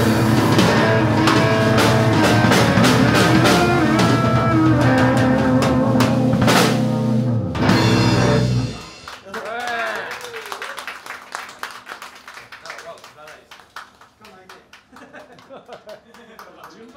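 An electric blues trio of electric guitar, electric bass and drum kit plays loudly, then ends the song on a final hit a little past halfway, its ring dying out. A brief shout and scattered clapping follow.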